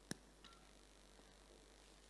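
Near silence: room tone, broken by one sharp click just after the start and a fainter tick about half a second in.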